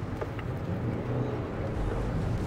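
Steady road noise inside a car at highway speed on a wet road in the rain: a low hum under a hiss from the tyres.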